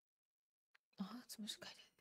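Near silence, then about a second in a brief, quiet whisper-like murmur of a woman's voice.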